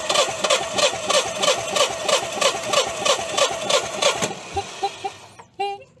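A Generac standby generator's twin-cylinder engine is cranked over on its starter with the spark plugs out for a compression test, chugging at about four pulses a second. The cranking stops about four seconds in.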